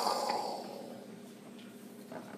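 A man's mouth-made sound effect for a warplane, a breathy rushing hiss that fades away over about the first second.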